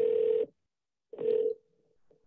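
Two half-second telephone tones of one steady pitch, about a second apart, at the start of a recorded wiretapped phone call.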